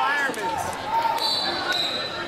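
Coaches and spectators shouting in a gymnasium during a high school wrestling bout, with thumps of the wrestlers on the mat. A short high-pitched squeal comes in the second half.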